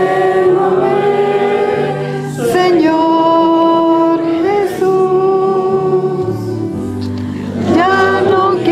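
A hymn sung by women's voices amplified through microphones, with long held notes over a steady low accompaniment that changes chord twice.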